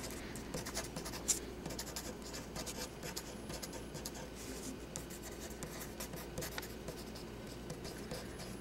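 Pen writing on paper: a run of short scratchy strokes, with one sharper tick about a second in.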